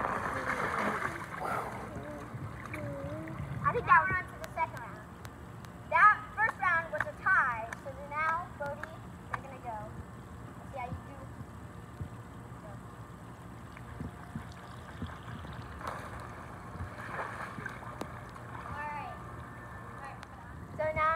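A child sliding belly-first along a wet plastic slip'n slide, a splashing swish in the first two seconds and again later on. Children's high-pitched shouts and squeals come in between.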